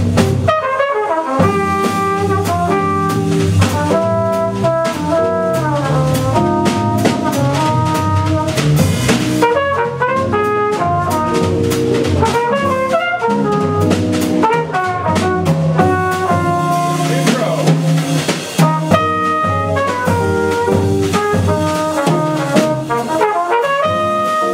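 Live jazz quartet playing: a trumpet carries a melodic line of stepping notes over drum kit with cymbals, double bass and archtop guitar.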